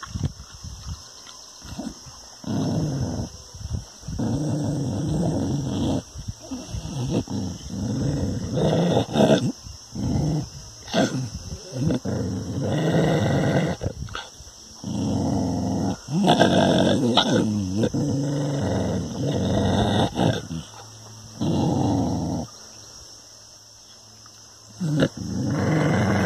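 A dog growling at its own reflection in a mirror, in a run of low rumbles a second or two long with short breaks between them.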